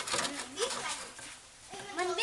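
Human voices talking and calling out in wavering tones, with a few short clicks.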